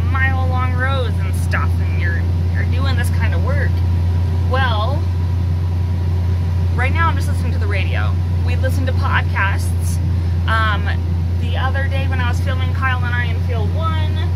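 A tractor's engine running steadily, heard inside the closed cab as a constant low drone under a woman's talking.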